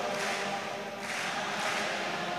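A congregation singing a worship chorus together, many voices at once.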